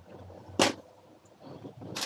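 A single short swish about half a second in, from a reusable fabric shopping bag being handled and packed; otherwise only faint background.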